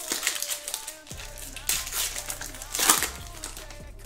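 Foil wrapper of a Panini Select football card pack crinkling and tearing as it is ripped open by hand, in irregular bursts through the first second, again about a second and a half in, and loudest near three seconds in. Background music plays underneath.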